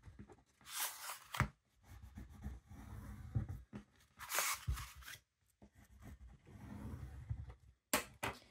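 Hands rubbing and pressing a sheet of paper flat against a board to mark its folds: paper rustling under the palm, with two longer sweeps, about a second in and about four seconds in, and a few light ticks.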